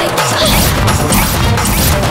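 Loud, dramatic film background score with heavy, fast, crashing percussion strikes over a deep bass.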